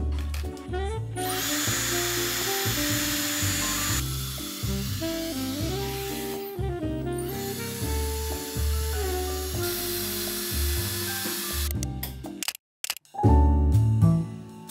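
Background music with a steady beat, over the high rushing hiss of a Dyson Airstrait air straightener blowing air through wet hair; the air starts about a second in, dips briefly midway and stops shortly before the end.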